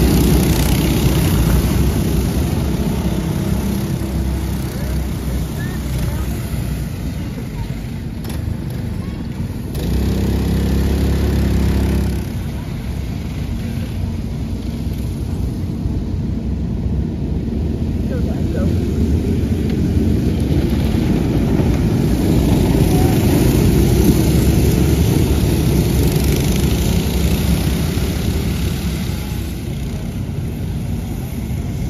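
A pack of box-stock dirt-track go-karts with Predator 212 single-cylinder engines running laps, their engine drone swelling and fading as they pass and go round the track. A steadier, louder engine note stands out for about two seconds around ten seconds in.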